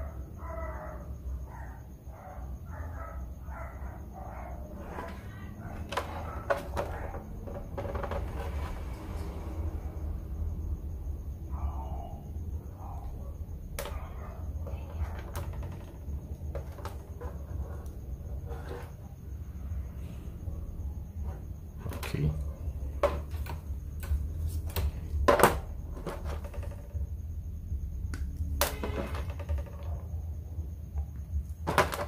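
Scattered clicks and knocks of small tools, wire and parts being handled on a workbench during soldering, louder and more frequent in the second half, over a steady low hum.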